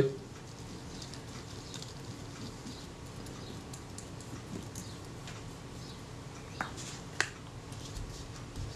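Cotton bud rubbing faintly over the oily diaphragm blades of a Synchro-Compur leaf shutter while cleaning them with solvent: a light, scratchy ticking, with two small sharp clicks near the end.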